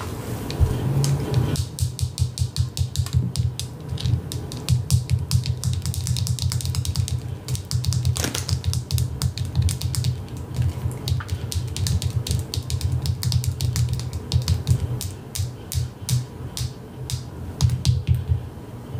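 Fingernails tapping rapidly and irregularly on the hard candy coating of a candy apple, over background music with a steady low bass.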